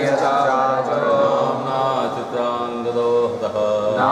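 Sanskrit verse chanted to a slow, sung melody, with long held notes gliding from one pitch to the next.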